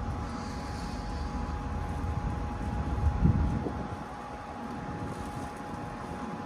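Steady electrical hum of two held tones from a BP Pulse rapid charger running its pre-charge safety checks, over wind rumbling on the microphone. A brief low thump comes about three seconds in.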